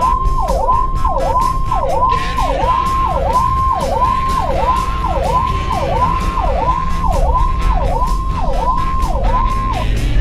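Electronic emergency vehicle siren sounding in a fast repeating cycle, dropping from a high note to a low one and back about one and a half times a second, heard from inside a moving vehicle's cabin over the low rumble of the road. The siren stops just before the end.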